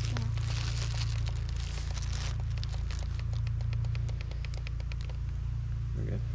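Hands handling a trail camera strapped to a tree: rustling for the first two seconds, then a run of small irregular clicks and crackles. A steady low rumble runs underneath.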